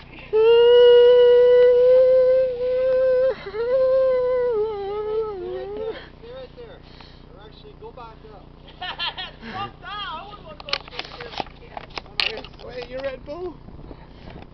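A man's long, loud scream held on one pitch for about three seconds, then wavering and sliding down into a wail that dies away about six seconds in. After a short lull come shorter broken cries that bend up and down in pitch.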